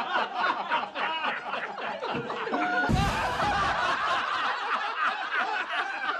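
Audience laughter, many voices chuckling and snickering at once. A low thud comes about three seconds in.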